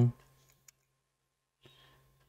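Near silence with one short, faint click about two-thirds of a second in: a key being pressed on a computer keyboard.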